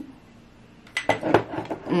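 A quick run of light clinks and knocks about a second in, then a voice humming 'mm-mm' near the end.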